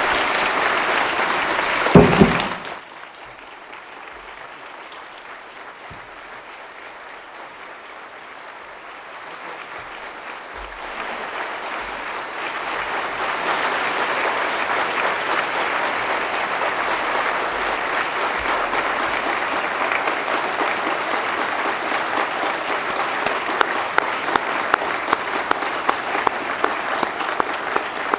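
A large crowd applauding at length after a speech. It is loud at first with a single thump about two seconds in, then drops suddenly and builds again to steady, full applause, with a few sharp single claps standing out near the end.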